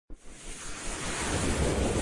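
Whoosh sound effect of an animated title intro: a short click at the very start, then a rush of noise that swells steadily louder.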